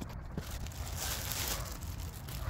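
Plastic packaging bag rustling and crinkling as it is handled, loudest about a second in, over a steady low rumble.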